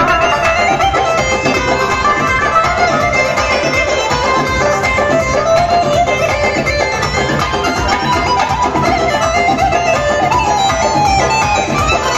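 A live Uzbek wedding band playing an instrumental dance passage: electric guitar and keyboard melody over a doira frame drum and a large drum beat, amplified through loudspeakers.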